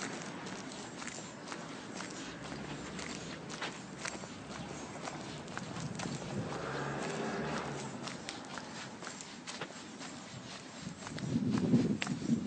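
Footsteps of a person walking on a paved street, a steady run of short scuffing clicks.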